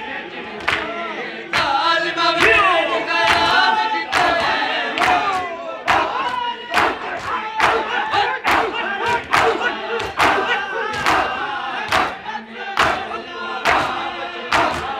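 A crowd of men chanting a noha together in unison while striking their bare chests with open hands (matam), the slaps landing in a steady rhythm a little over once a second.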